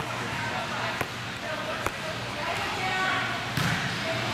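A volleyball bouncing on a hard gym court floor, three sharp bounces about a second apart, under the voices of players and spectators.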